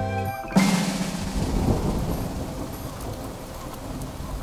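A thunderclap breaks out about half a second in and rumbles away under steady rain. A music note cuts off just before it.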